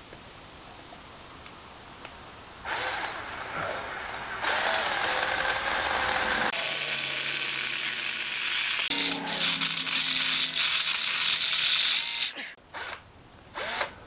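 Electric hand drill with a 1/8-inch bit drilling into a broken steel exhaust stud seized in a motorcycle cylinder head, enlarging the pilot hole. It starts about three seconds in, runs with a high whine that shifts in pitch a couple of times, stops about two seconds before the end, then gives two short blips.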